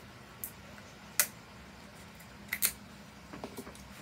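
Scissors snipping into hard plastic cosmetic packaging: a few sharp snips, the loudest just over a second in and a quick pair a little later, with fainter clicks of plastic near the end.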